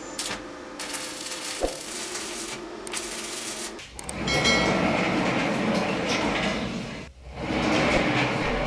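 Welding arc crackling in short runs for the first few seconds. Then the steel sawmill sled carriage rolls along its round-bar rail, a metallic rumble with a ringing tone; it stops for a moment about seven seconds in and rolls again.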